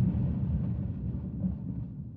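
The fading tail of a deep boom sound effect, an intro-sting hit, dying away steadily with its low end lasting longest.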